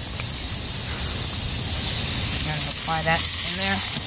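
A steady hiss of air escaping from the punctured tyre through the nail hole, which is being reamed for a plug.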